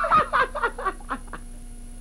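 A man laughing in a quick run of short bursts that fall in pitch, dying away about a second and a half in.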